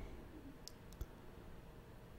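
Three faint computer mouse clicks close together about a second in, over quiet room tone.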